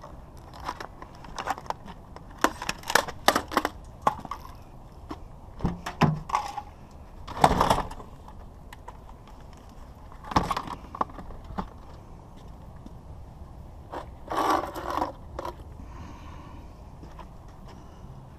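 Handling noise of a scrapped metal electronics unit and its loose wires: scattered clicks, knocks and scrapes, with a few louder clunks and rustles as things are moved about in a pickup's cab.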